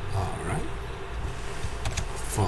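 Steady low background hum of the recording, with a brief soft voiced sound from a person in the first half second and a single sharp click near the end.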